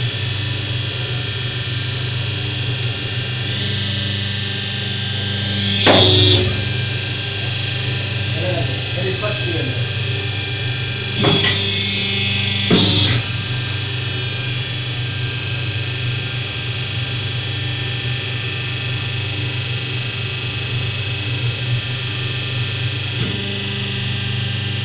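Guitar background music over the steady hum of a double-die hydraulic paper plate press, with three short, sharp strokes from the dies spaced several seconds apart.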